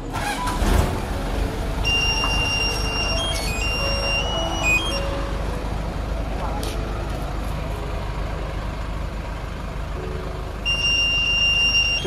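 Steady vehicle and street noise with indistinct voices, a knock about half a second in, and a thin high electronic tune that plays briefly twice.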